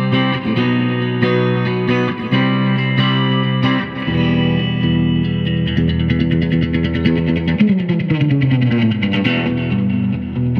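Electric guitar with a single bridge pickup, played through a Fender Super Reverb tube amp. Held chords in the first few seconds give way to faster picked notes, with a run falling in pitch near the end.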